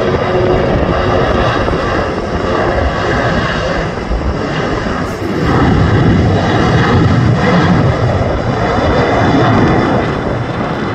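Twin-engine jet airliner's engines at takeoff thrust during the takeoff roll, a heavy, steady rumble and roar that grows louder about halfway through as the plane nears liftoff.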